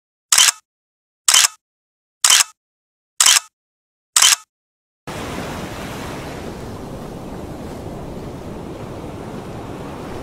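Five sharp camera-shutter clicks, about one a second, with silence between them; then, about five seconds in, the steady rush of ocean surf begins.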